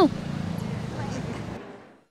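Steady outdoor street background noise with a low hum, fading out to silence near the end.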